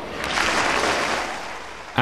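A short burst of applause that swells and then fades away over about two seconds.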